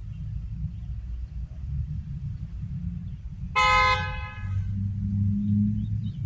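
A vehicle horn honks once, a single short steady blast a little past halfway through, over a low steady rumble.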